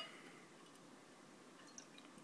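Faint pouring of carbonated hard cider from a glass bottle into a glass, barely above near silence, with a small tick near the end.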